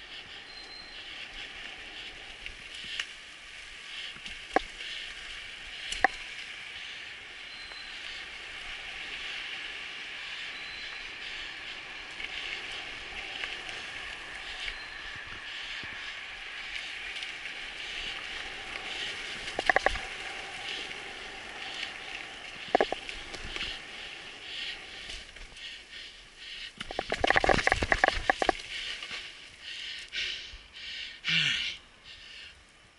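Mountain bike rolling down a dirt forest trail over a steady high hiss, with a few sharp single knocks and a dense burst of clattering impacts near the end.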